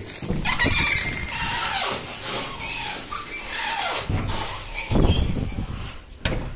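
Entrance doors squealing on their hinges as they are pushed open, in several drawn-out, falling squeals. A heavy thud comes about five seconds in.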